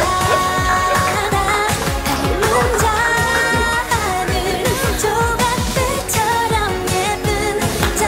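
A pop song playing, a singer's voice over a steady beat.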